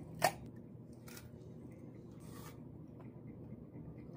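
Close-up crunch of teeth biting and tearing into a firm, unripe green mango: one sharp crunch near the start, then two softer crunches about one and two seconds later.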